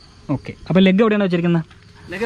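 A man's voice, one drawn-out utterance of just under a second, over a faint, steady, high chirring of insects.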